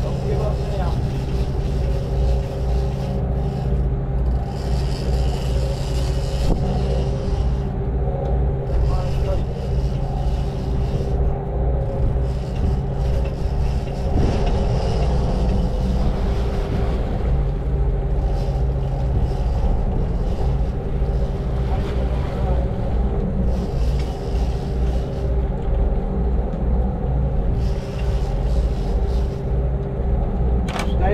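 A sportfishing boat's engines running steadily with a low, even hum, with water churning along the hull and in the wake.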